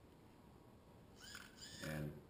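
Near silence for about a second, then the mount's small electric motor, a hobby servo modified to spin a full 360 degrees, starts up with a faint high whine that rises in pitch and then holds steady as it turns the camera.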